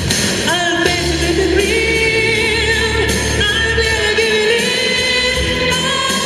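A woman singing live into a microphone over band accompaniment, holding long notes that waver in pitch.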